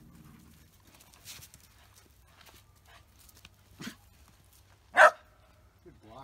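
A dog barking once, loud and short, about five seconds in, with a softer, shorter sound from it a second earlier.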